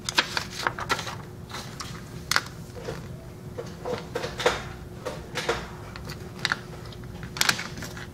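Handling noise: scattered light clicks and rustles, irregular in timing, over a faint steady hum.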